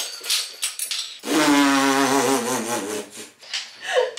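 A hard plastic toy capsule being smashed open, a quick run of cracks and clatter in the first second. Then a long, low held note, wavering near its end.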